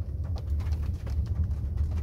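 Low, steady rumble inside the cabin of a Volkswagen Teramont driving slowly, with a few light clicks over it.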